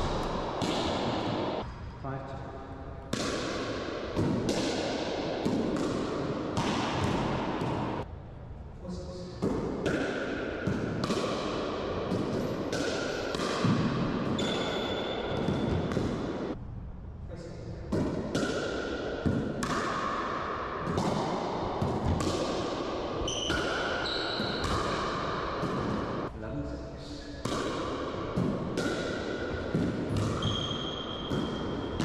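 Pickleball being played in an enclosed racquetball court: a hard plastic ball popping off paddles and bouncing off the floor and walls, each hit echoing in the court. The hits come about one every second, with a few short pauses between rallies.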